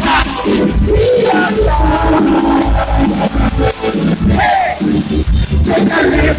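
Live band music played loud through a PA, with heavy bass and a singer's voice at times.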